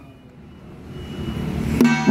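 Ringing from the troupe's hand drums and brass percussion dies away, and a low rumbling swell builds through the pause. Near the end a sharp new strike of drums and brass starts the next round of playing.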